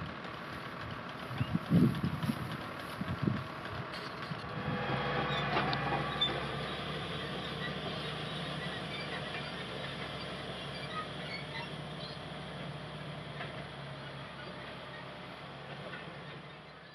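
Tractor engine running steadily as it pulls a trailed boom sprayer, swelling in about four to five seconds in and then slowly fading. Before it, a few low thumps.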